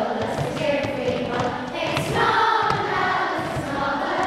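A child's singing voice carrying a melody through the song's chorus in Irish, held notes that glide between pitches, with other voices possibly joining in.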